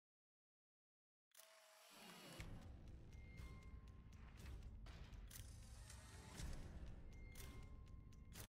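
Faint soundtrack of a video trailer ad, starting about a second in: low rumbling music with scattered clicks and a couple of short steady beeps.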